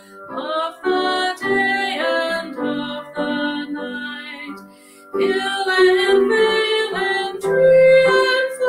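A solo voice singing a hymn with piano accompaniment, in sustained phrases with a short breath gap about five seconds in.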